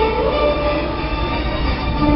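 Jet ski engines running as the watercraft speed across water, a steady drone mixed with loud show music from loudspeakers.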